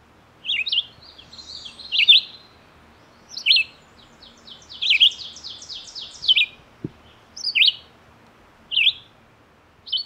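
Red-eyed vireo singing: short, separate whistled phrases repeated about every second and a half. Twice a fainter, fast run of higher notes sounds behind them.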